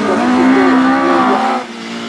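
Autograss race car engines running at high revs on the dirt track, one steady engine note whose pitch wavers a little; it fades out about one and a half seconds in.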